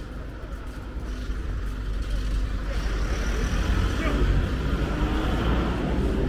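Motor vehicle passing close by on a narrow street, its rumble swelling to a peak about four seconds in, over general street noise.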